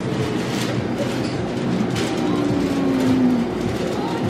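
Steady, loud shop background noise inside a doughnut shop: an even rumble with faint clatter and indistinct tones, and no clear voices.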